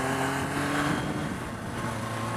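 1987 Suzuki GSX-R750's inline-four engine running at steady riding revs, heard from the rider's seat over a hiss of wind. Its note eases slightly about a second in.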